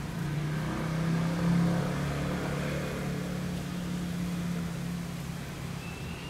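A motor vehicle's engine running with a steady low hum, loudest about a second and a half in.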